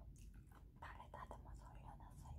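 Faint whispered speech in a woman's voice.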